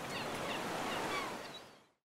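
Ocean waves breaking on a beach as a steady wash of noise, with a few faint short chirps over it, fading out near the end.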